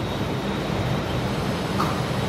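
Steady low rumble and hiss of background room noise, with no distinct event.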